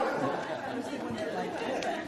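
Indistinct chatter of several people talking at once in a large council chamber, with no single voice standing out.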